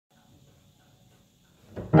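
Near silence with a faint, steady high whine. Near the end a brief spoken word is heard, and then the first piano chord of the song's accompaniment sounds.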